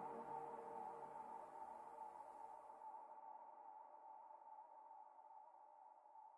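Faint held synthesizer chord ending an electronic dance track, fading steadily away. Its low end drops out about halfway through.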